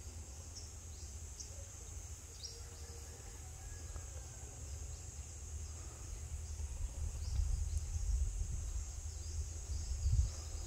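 Steady high-pitched drone of insects, with short scattered chirps above it. A low rumble on the microphone grows louder in the second half.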